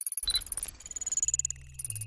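Synthesized sci-fi interface sound effects: a rapid, high-pitched electronic ticking chatter. About a second in, a low electronic hum joins it and breaks into short stepping tones near the end, as a progress bar fills.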